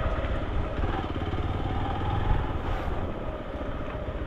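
Motorcycle engine running steadily at low speed under light throttle.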